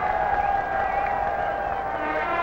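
Massed marching band holding one long steady note over the noise of a large stadium crowd.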